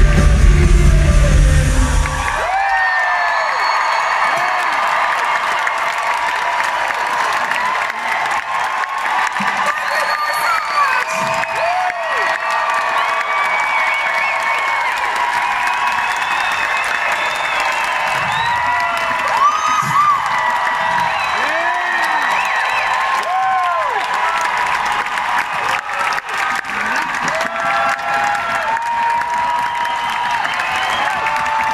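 Live band music with heavy bass stops about two seconds in, then a concert crowd cheers, whoops and applauds.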